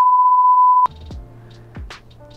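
Censor bleep: one loud, steady, high beep tone lasting just under a second, masking a spoken word and cutting off suddenly, followed by quieter background music.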